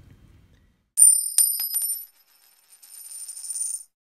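Metallic coin chink: a sharp clink about a second in, a few quick clicks, then a high bright ringing that holds for nearly three seconds and cuts off abruptly.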